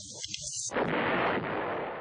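Explosion on an archival war-film soundtrack: a sudden blast about two-thirds of a second in, followed by a long, noisy rumble that slowly dies down.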